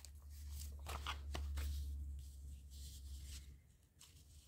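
Paper rustling with light taps as a printed book page is handled and laid flat on a cutting mat, the sounds coming quick and soft in the first couple of seconds and thinning out after. A steady low hum runs underneath.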